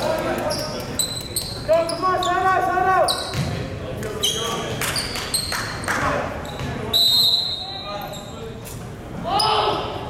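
Echoing gymnasium sounds between volleyball rallies: players shouting calls, short high squeaks of sneakers on the hardwood court, and a ball bouncing on the floor.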